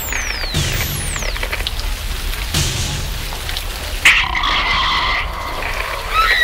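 Dark horror-trailer sound design: a steady low rumble with two dull hits about two seconds apart, then a sudden harsh burst of noise about four seconds in that lasts about a second.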